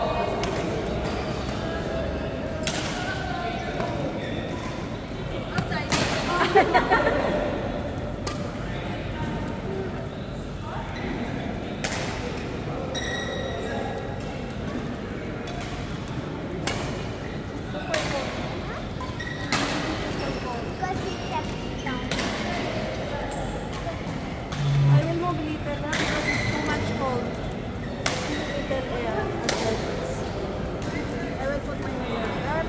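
Badminton rackets striking a shuttlecock in a rally: sharp hits every second or two, ringing in a large hall, with a quick cluster of hits about six seconds in. Voices murmur underneath, and a low thud comes near the end.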